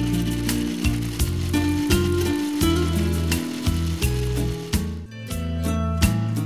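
Electric kitchen mixer grinder with a steel jar running, a steady noisy whirr with a short break about five seconds in, under background music with a plucked melody.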